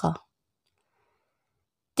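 Near-total silence in a pause of spoken narration, with only the tail of a word at the very start.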